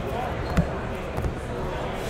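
A single dull knock on a tabletop about half a second in, from hands handling card boxes, over a steady background hubbub with faint voices.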